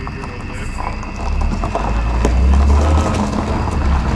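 A car pulling away across a gravel lot: a low engine and tyre rumble with gravel crunching, building about a second in and loudest two to three seconds in.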